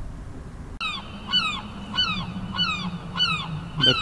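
A low rumble that cuts off suddenly about a second in, followed by a bird calling in a rapid series of short falling calls, about three a second, over a steady low hum.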